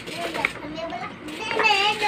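Children's voices: short bits of a child's chatter, then a loud, high-pitched child's voice calling out from about one and a half seconds in.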